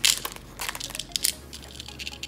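Small plastic packet of nail charms crinkling as it is handled and opened, in several short sharp rustles, the loudest right at the start.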